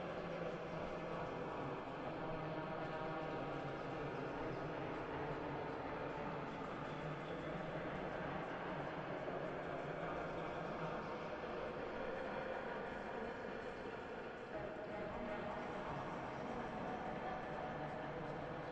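Steady, dense ambient texture: a noise-like wash layered with faint sustained tones, played back as sound material for a slow ambient composition.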